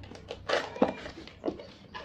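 Cardboard box being opened by hand: the lid flap is pulled free of its slot, giving a few short scrapes and rubs of cardboard on cardboard.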